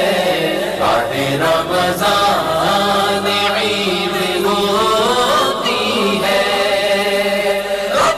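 Devotional vocal chanting: voices singing a flowing, chant-like melody.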